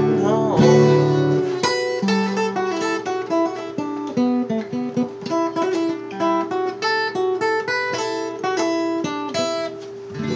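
Solo acoustic guitar played as an instrumental break: a quick run of single picked melody notes over a steady ringing drone note, with a fuller strum at the end.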